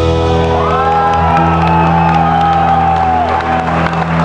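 Live rock band's final chord ringing out on electric guitars after the drums stop, with a long high note rising about half a second in, held, and falling away near the end. Whoops from the audience come in over the sustained chord.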